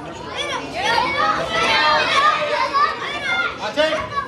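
Many high-pitched children's voices shouting and calling over one another, swelling from about a second in.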